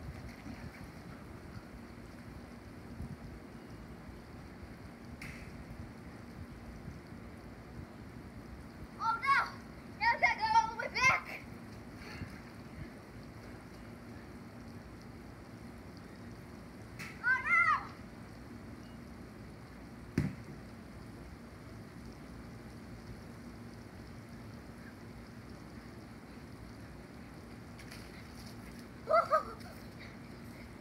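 A child's short shouts and whoops: a cluster about nine to eleven seconds in, another around seventeen seconds and one near the end. Under them is a steady faint hiss of water spraying from a slip 'n slide sprinkler.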